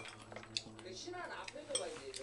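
Chopsticks clinking against dishes and metal bowls of side dishes during a meal: a few light clinks, the clearest about half a second in and near the end.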